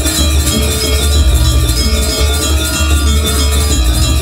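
Loud live gamelan music accompanying a Janger stage show: ringing metal percussion over a deep, pulsing bass beat.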